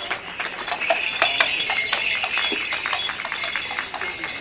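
Morris dancers' leg bells jingling irregularly as the dancers move about, with many small clicks and jangles.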